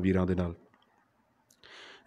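A man speaking Punjabi into a handheld microphone stops about half a second in. After a pause a soft breath is drawn just before he goes on, with a faint click near the end of the pause.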